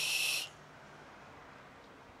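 A box-mod e-cigarette hissing with a thin high whistle as air is drawn through its atomizer during a long inhale, stopping suddenly about half a second in.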